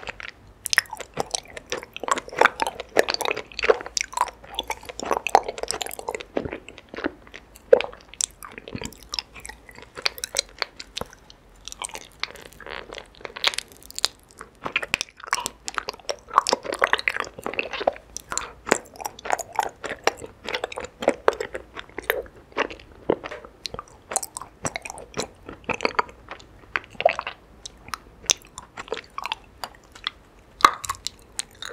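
Close-miked biting and chewing of raw honeycomb, wax cap and comb. It makes a dense, irregular run of small crackling crunches and wet clicks.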